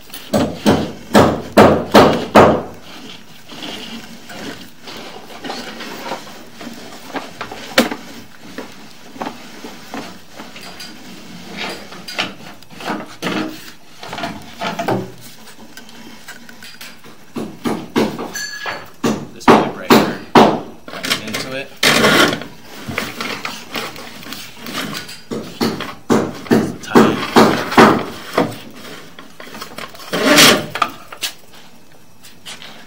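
Bursts of knocking and clattering from a sewer inspection camera's head and push cable as they are pulled out of the pipe, handled and fed back in.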